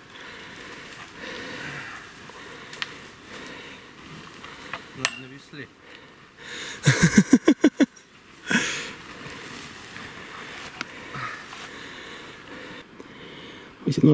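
Steady rustling of tall grass and ferns as a hiker with trekking poles pushes through dense undergrowth, with heavy breathing and a few sharp clicks. A short burst of rapid voice sounds comes about seven seconds in, and a shorter one just after.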